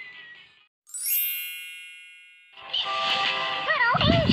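A kids' song playing from a phone fades out, then about a second in a bright chime-like ding rings and dies away over about a second and a half. Near the end, bright music with a wavering melody starts.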